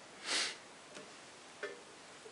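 A person's short sniff, followed by two faint clicks over a steady background hiss.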